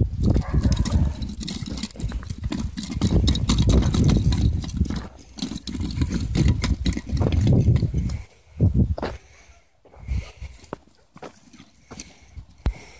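Footsteps crunching on a gravel path, dense and continuous for about eight seconds, then dropping to a few scattered crunches.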